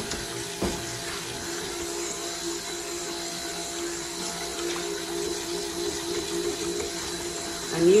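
A small 100-watt stick blender running steadily with an even motor hum, its head churning liquid cold-process soap batter in a stainless steel pot to bring it to emulsion.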